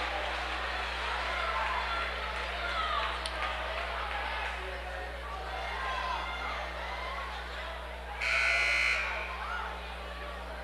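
Gymnasium buzzer at the scorer's table sounding once for just under a second near the end, calling in a substitution, over a steady murmur of voices in the gym.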